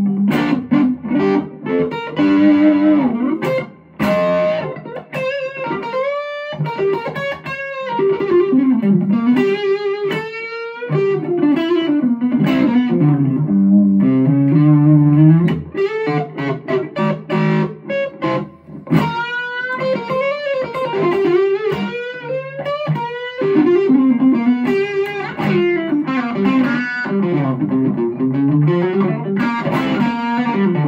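Electric guitar lead played on a Gibson Les Paul Standard '58 Reissue with Grinning Dog humbuckers, through a distortion pedal. Single-note phrases with string bends and vibrato, separated by short pauses.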